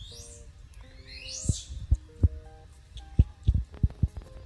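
Background music: held mid-range notes over soft low beats that come in two groups of three, about a third of a second apart.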